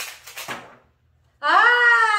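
A loud, drawn-out exclamation from a high-pitched voice starts about one and a half seconds in, its pitch slowly falling as it is held. It follows a short burst of rattling noise at the start.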